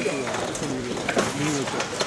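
Pigeons cooing, a string of short, low rising-and-falling calls, over faint crowd chatter.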